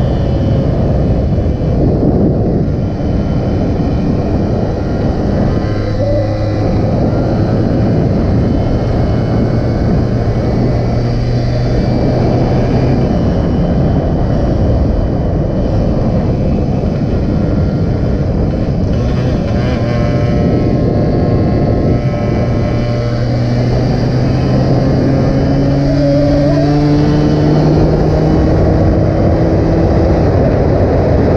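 Yamaha RX two-stroke single-cylinder motorcycle engine running at speed on a top-speed run, its note climbing slowly in the last third as the bike keeps gaining speed. Heavy wind rush on the microphone covers much of it.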